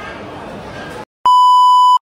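Low restaurant chatter that cuts off dead about a second in. After a brief silence a loud, steady test-tone beep sounds, a TV test-pattern transition effect added in editing.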